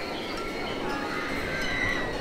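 Distant riders screaming on a drop-tower ride, long wavering high cries that are held longest near the end, over steady amusement-park background noise.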